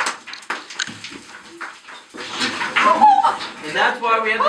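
Scraping and clattering of loose rock and old timbers underfoot while climbing through a mine stope. About halfway through, a louder high, wavering voice-like sound joins in.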